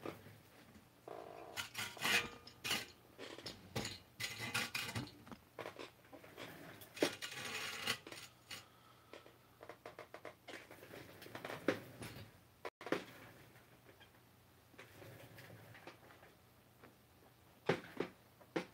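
Handling noise as a camera is picked up and swung round: a cluster of knocks, clicks and rustling over the first half, then quieter, with a few single clicks later on.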